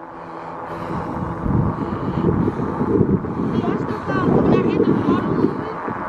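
Wind buffeting the microphone of a camera carried on a moving electric bike: a gusty, uneven rumble that builds over the first second or so and then keeps on.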